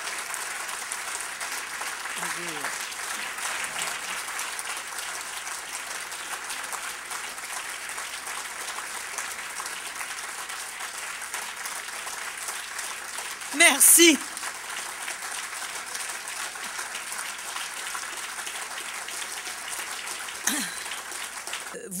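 Audience applauding steadily without a break. About two-thirds of the way through, a woman's amplified voice briefly cuts in with a single word over the microphone, and the applause carries on.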